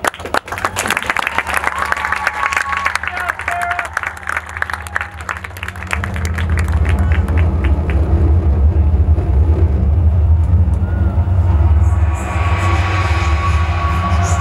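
Audience applause for about the first six seconds, then a marching band begins its show with a loud, sustained low opening, with higher instruments joining near the end.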